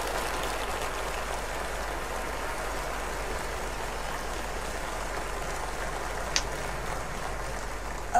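A large theatre audience applauding: dense, steady clapping, with one brief sharp click about six seconds in.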